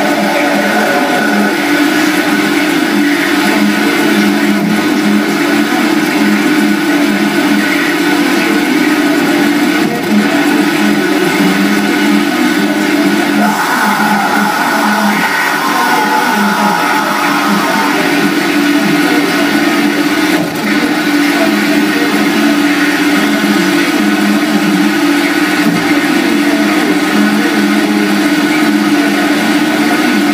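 Live harsh noise music from a table of effects pedals and electronics: a loud, unbroken wall of distorted noise over sustained droning tones. A wavering higher tone swells in around the middle and fades a few seconds later.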